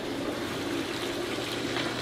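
Outdoor wall fountain running: several thin streams of water falling steadily into its basin, an even splashing trickle.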